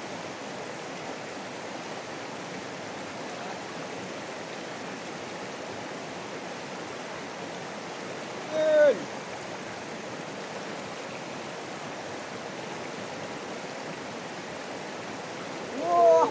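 Shallow rocky river rushing over stones, a steady rush of water. About halfway through, a person gives one brief, loud shout that falls in pitch.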